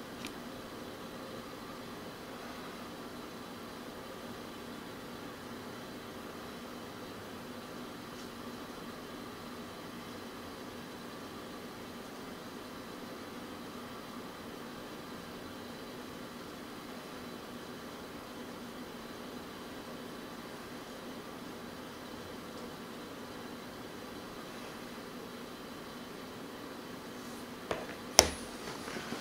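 Steady room tone: an even, faint hiss with a low hum, and a short click near the end.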